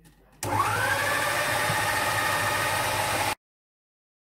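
Goldair food processor motor starting up with a quickly rising whine, then running steadily as it blends hummus thinned with a little water. The sound cuts off abruptly near the end.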